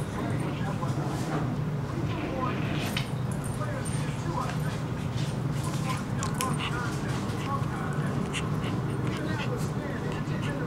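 Two Yorkshire terriers play-fighting, giving small whines and yips among scattered short clicks, over a steady low hum.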